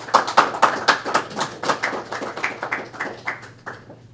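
A small audience clapping: dense hand claps that thin out and stop near the end.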